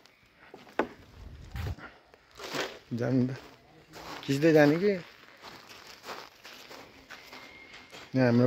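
A man's voice in two short bursts, about three and four and a half seconds in, with scattered footsteps and a brief low rumble near the start.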